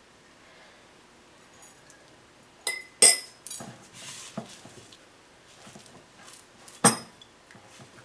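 A few sharp clinks of a metal spoon and hands against glass bowls, each with a short ring, the loudest about three seconds in and another near the end, as a spoonful of water goes into the flour and the dough is worked by hand. Faint rubbing of hands kneading dough in the bowl lies between the clinks.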